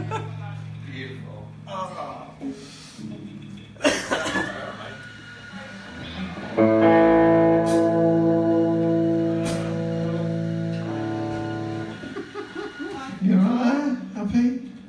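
Amplified electric guitar chords ringing out between songs. A held chord fades over the first couple of seconds and there is a sharp knock at about four seconds. A loud chord is struck about six and a half seconds in and held for about five seconds.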